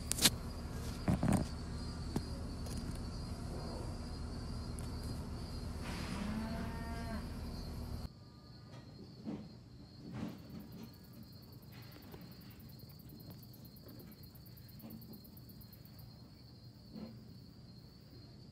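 Insects chirring steadily at a high pitch. For the first eight seconds a low hum sits under it, with a few sharp clicks near the start and a short rising pitched call around six seconds in. The hum drops away at a sudden cut, leaving the insect chirring alone and quieter.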